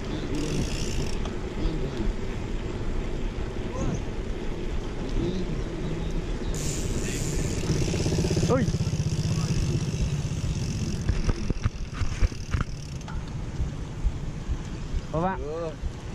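Steady low rumble of wind buffeting and tyre rolling noise picked up by a bicycle-mounted action camera while riding on tarmac at about 16 km/h, with faint voices of other riders.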